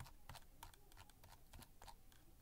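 Near silence: faint room tone with a few soft clicks of a computer mouse as a list is scrolled.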